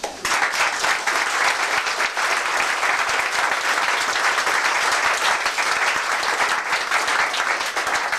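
A roomful of people applauding, a steady, dense clapping.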